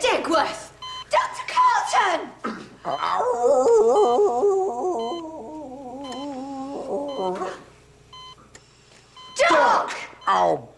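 An operating-theatre patient monitor beeping about once a second, with a long, wavering, wailing voice over it for several seconds in the middle that slowly falls in pitch.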